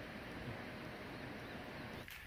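Faint, steady outdoor background hiss with no distinct events.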